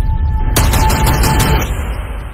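Trailer soundtrack with deep bass music and a rapid burst of gunfire starting about half a second in and stopping about a second later.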